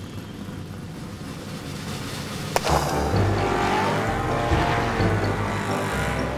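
Cartoon sound effect of monster truck engines: after a sharp crack about two and a half seconds in, a loud low engine rumble starts and keeps going, over background music.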